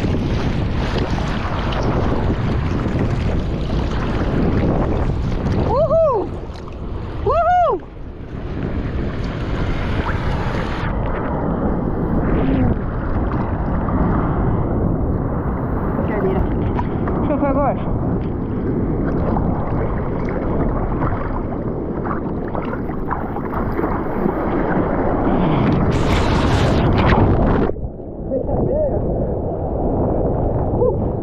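Sea water sloshing and splashing against a bodyboard and its nose-mounted action camera as the rider paddles, with wind on the microphone. Two brief gurgles come about six and seven and a half seconds in, and a louder splash near the end cuts off suddenly.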